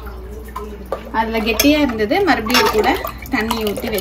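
A metal spoon stirring and clinking against a stainless-steel pot on the stove, with a woman's voice talking over it from about a second in.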